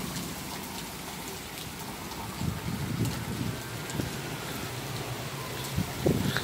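Steady heavy rain falling on a wet street, sidewalk and lawn, an even hiss throughout. A few low rumbles come through from about two and a half seconds in and again near the end.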